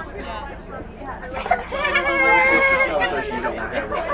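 Young girls' voices chattering inside a moving bus, with one drawn-out, high-pitched vocal sound from a girl about two seconds in, lasting about a second, over the bus's low steady hum.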